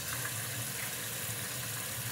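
Kitchen tap running in a steady stream onto small fruit in a plastic colander in the sink, as the fruit is rinsed by hand.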